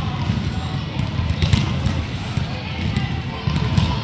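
A futsal ball being kicked and thudding on a hard indoor court, with scattered knocks and distant children's voices, all echoing in a large gym hall.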